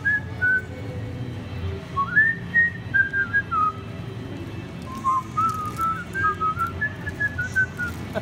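A person whistling a tune in three short phrases, with pauses of a second or so between them.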